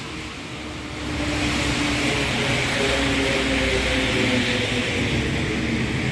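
A motor vehicle passing on a wet road: tyre hiss on the wet asphalt builds about a second in and holds, over a steady engine hum that slowly sinks in pitch.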